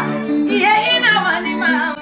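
A woman singing over instrumental music, her voice sliding and wavering in pitch above steady backing notes.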